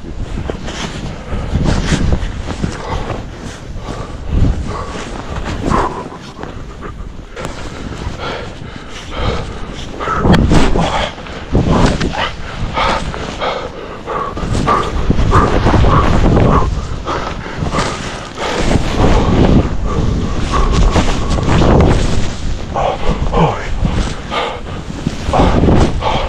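Skis plowing through deep powder snow, with a rushing, uneven noise that swells and dips as turns are linked and wind buffets the camera microphone. Short voiced grunts and breaths from the skier come through repeatedly, most densely in the middle.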